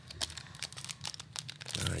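Light crackling and clicking of a foil-wrapped trading-card booster pack and loose cards being handled by hand, a series of small sharp crackles.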